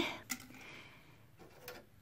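A quiet pause in a small room: faint room noise with two soft clicks, one shortly after the start and one near the end.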